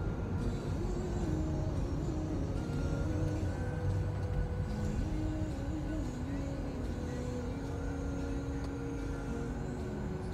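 Steady rumble of road and engine noise inside a moving car's cabin, with music playing over it: a melody of held notes stepping from pitch to pitch.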